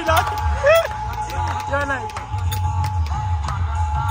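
Dholak drumming in a steady pulsing beat, with sharp high strikes over it and a few voices shouting short calls.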